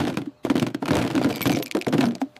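Cartoon sound effect of a pile of bones tumbling into a plastic basket: a rapid clatter of knocks and thunks, with a brief break about half a second in.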